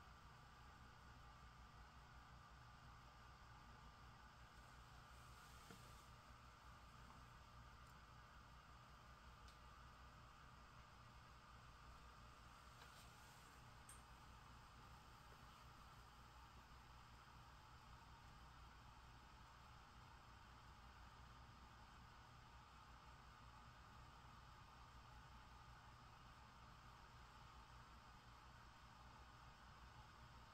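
Near silence with the faint steady whir of a Raspberry Pi 5's cooling fan, running at speed because all four CPU cores are at full load, with a thin high steady tone in it.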